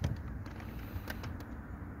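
Faint clicks from a car's brake pedal being pressed, over a low, steady background rumble.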